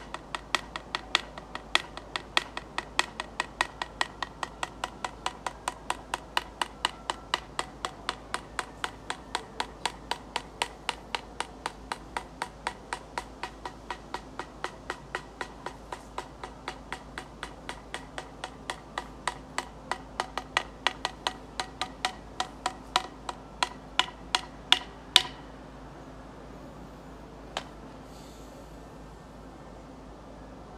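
Antlers knocked together in a steady rhythm, about three sharp clacks a second. The strikes grow louder and a little slower toward the end, then stop suddenly, with one more single clack near the end.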